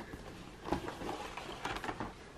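Faint handling sounds of a cardboard advent calendar as its cover is lifted open: a few soft brushes and light taps, one near the middle and a couple toward the end.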